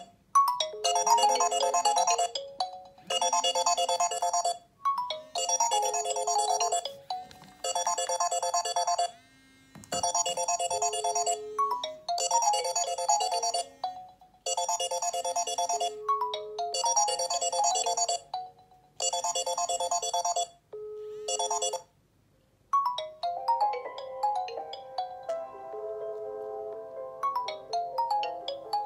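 Smartphone incoming-call ringtone: a short melodic phrase repeating about every one and a half seconds, which stops about 21 seconds in. After a short pause a different melody of bell-like notes starts.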